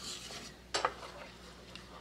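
Wooden spoon stirring thick, hot peanut butter fudge mixture in an enameled pot, with two quick knocks of the spoon against the pot about three-quarters of a second in. The peanut butter is being worked into the boiled sugar, butter and milk syrup until it melts.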